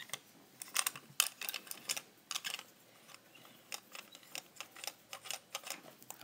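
Light, irregular clicks and taps of a plastic toy train engine being handled and turned over in the hands, its wheels and side rod moving.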